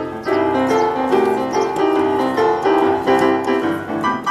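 Upright piano playing a twelve-bar blues. A man's hands play chords and runs while an elephant's trunk joins in on the keys.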